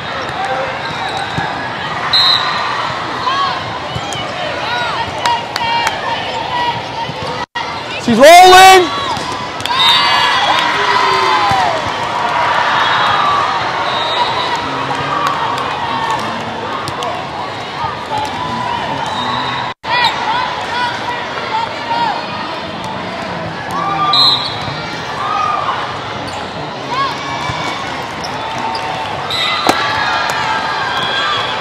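Indoor volleyball play in a large hall full of courts: sneakers squeaking on the court and balls being struck, over the steady chatter of a crowd. A loud rising squeal stands out about eight seconds in.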